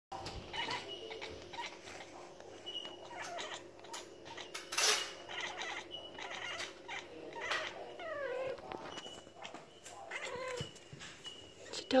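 Bengal cat chattering and chirping at birds it cannot reach: many short calls, a few with a falling pitch. One sharp click about five seconds in is the loudest sound.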